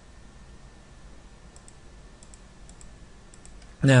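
Faint keystrokes on a computer keyboard: a few light clicks, mostly in close pairs, starting about one and a half seconds in, over a low steady background hiss.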